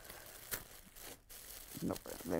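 Tissue paper rustling and crinkling under fingers as a taped tissue-paper parcel is worked open, with a sharp crackle about half a second in.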